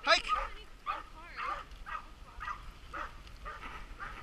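Sled dogs barking and yipping in short repeated calls, about two a second, as the team is called off with a shout of "Hike!" and starts to run: the dogs are eager to go.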